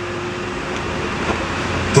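Steady outdoor street background noise with a low rumble that builds toward the end, typical of passing traffic.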